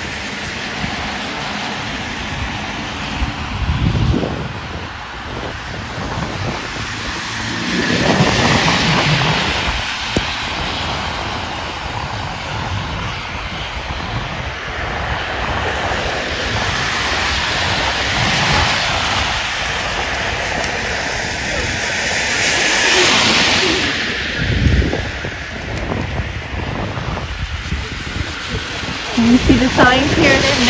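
Street traffic on a wet, slushy road: car tyres hissing through the water as vehicles pass, with louder swells as cars go by about eight seconds in and again a little past twenty seconds.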